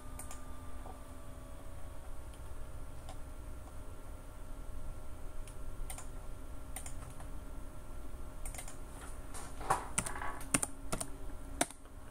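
Typing on a computer keyboard: scattered keystrokes and clicks, with a quicker run of keystrokes near the end, over a faint steady hum.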